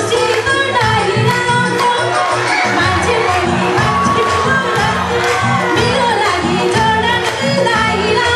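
A Nepali lok dohori song performed live: a woman singing into a microphone over rhythmic backing music, with a crowd cheering.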